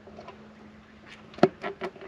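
A sharp plastic snap a little past halfway, followed by a few lighter clicks, as a black clip-on cover is pulled off a Narva 215 Mark II spotlight.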